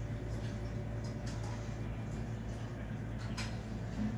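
A steady low hum in a small room, with a few faint clicks about a second in and again near the end.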